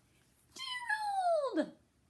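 A woman's high, squeaky character voice calling "Gerald!" once, the pitch sliding steeply down over about a second.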